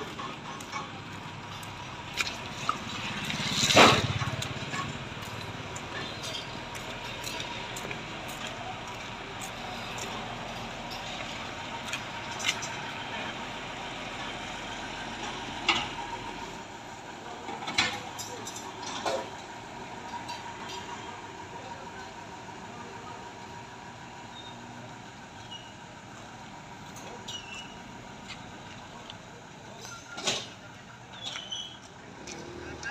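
Heavy truck engines running steadily, from a tow truck and the damaged lorry hooked to it, with scattered sharp clanks and knocks. A louder swell builds and fades about four seconds in.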